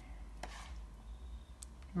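Metal spoon knocking while yogurt is spooned onto chicken in a glass bowl: a soft knock about half a second in and a fainter click near the end, over a low steady room hum.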